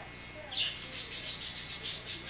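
A small bird chirping: a quick run of high, evenly repeated chirps, about six or seven a second, starting about half a second in.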